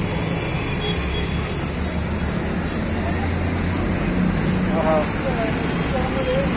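Steady road traffic noise with a low rumble. A brief voice is heard in the background near the end.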